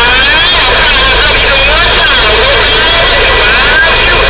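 Big Rig Series CB radio receiving distant stations: loud, steady static with several garbled, distorted voices and wavering whistles from overlapping signals, too broken up to make out any words.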